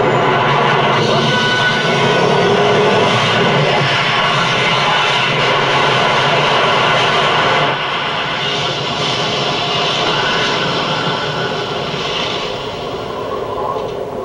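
A film soundtrack playing through an old television's speaker: a loud, rushing, crackling blast of electrical sound effects as lightning strikes on screen. It drops in level about eight seconds in and fades toward the end.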